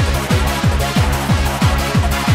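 Fast hardcore dance music: a kick drum hits about three times a second, each kick falling in pitch, under sustained synth chords and bright hi-hats.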